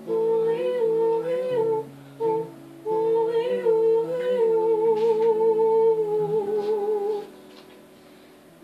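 A woman's voice humming a wordless melody over acoustic guitar; the last hummed note is held long with vibrato and stops about seven seconds in, leaving the guitar playing alone.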